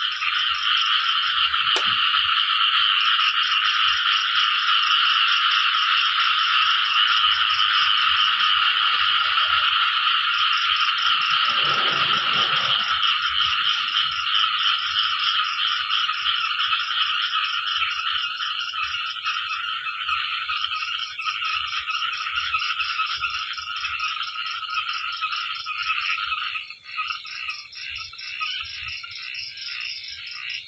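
A dense chorus of frogs calling at night after rain, a steady mass of overlapping calls with a fast, evenly pulsed high trill running above it. A brief lower swell comes about twelve seconds in, and the chorus thins out near the end.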